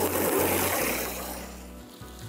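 Water hissing from a garden-hose spray nozzle onto a soapy carpet, fading out about one and a half seconds in, over background music.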